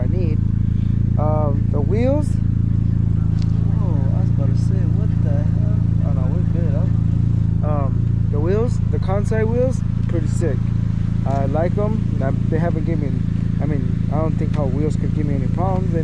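Mazda Miata engine idling with a steady low hum, under a man's talking.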